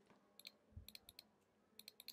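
Faint, scattered computer keyboard keystrokes, about half a dozen soft clicks, with a dull low thump a little before the middle; otherwise near silence.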